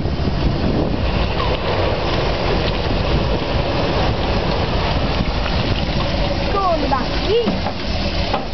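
Simca Marmon SUMB truck's 4.2-litre V8 engine running steadily under load as the truck works through mud, a deep continuous rumble. Voices call out briefly near the end.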